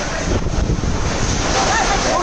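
Cyclone wind blowing hard on the microphone, with a heavy low rumble from about half a second to a second and a half as a tower crane falls and crashes to the ground.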